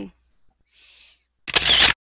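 A camera-shutter click, short and loud, as a picture of the pose is snapped, with a faint hiss just before it.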